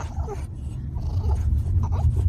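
A French bulldog puppy vocalizing softly in short bits over the steady low rumble of a moving car.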